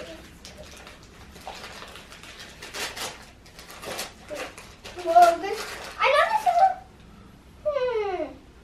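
Wrapping layers of a toy surprise ball crinkling and tearing as they are pulled off by hand. A high voice sounds briefly about five seconds in, and again with a falling note at the very end.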